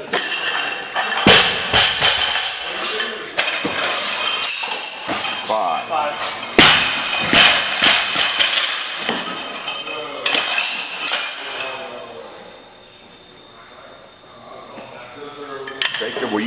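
A barbell loaded with bumper plates to 303 lb is lifted and dropped onto the lifting platform. It makes several loud clattering crashes with metallic clinking and rattling as the plates and bar land and bounce, and quietens near the end.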